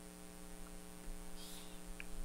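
Faint steady electrical hum in the recording between spoken steps, with a faint brief hiss about midway.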